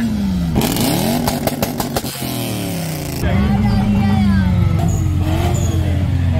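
A car engine revving: the pitch rises and drops back, a quick string of sharp pops comes about a second and a half in, then the engine is held at a steady higher pitch for about two seconds before falling back.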